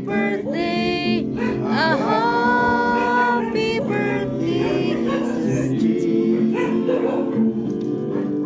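A small group of men singing a song together, with a steady pitched accompaniment sustained beneath them. The sung phrases are clearest in the first half.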